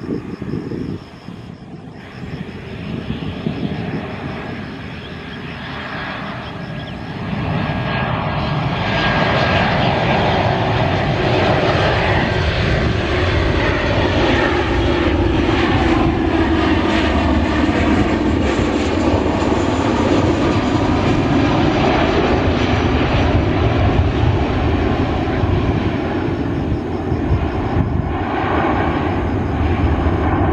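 Boeing 737-800 jet engines (CFM56-7B turbofans) on landing approach, getting much louder as the airliner comes in low and passes close. The pitch drops as it goes by, and the engines keep running loudly as it touches down and rolls along the runway.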